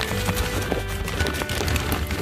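Background music over the crinkling of a plastic bag and the rattle of husk chips tipped from it into a plastic container.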